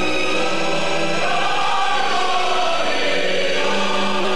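Choral music: a choir singing long, held chords.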